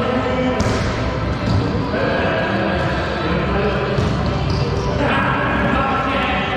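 A wallyball being hit and bouncing off the walls and hardwood floor of a racquetball court, the knocks echoing in the enclosed room, over players' voices.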